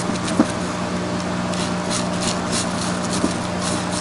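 Small stainless steel wire brush scrubbing the aluminium combustion chamber of a 2002 Yamaha YZ250F cylinder head: quick, irregular scratching strokes, thicker in the second half. Under it runs a steady low hum.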